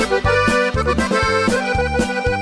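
Norteño band playing an instrumental break between sung verses of a corrido: an accordion plays over a steady beat of bass notes and drum strokes.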